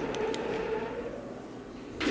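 Film sound effects: a steady, low mechanical hum from the huge machinery Yoda holds aloft with the Force, with two faint clicks near the start.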